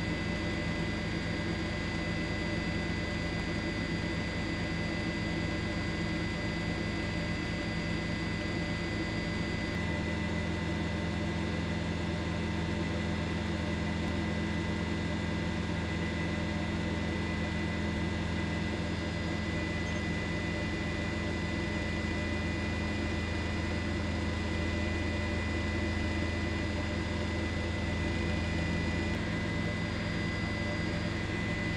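Steady helicopter engine and rotor noise: a constant drone with low hum bands and a few fixed whine tones above it. The low drone shifts slightly about ten seconds in.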